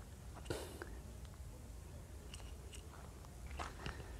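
Faint, scattered crunches and rustles of footsteps on a dry dirt trail and grass, a few irregular steps, with a cluster near the end.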